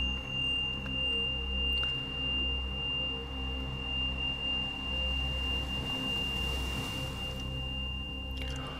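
Ambient meditation music: a steady high pure tone held over a low drone that slowly swells and ebbs every couple of seconds. A soft hiss rises and fades about six to seven seconds in.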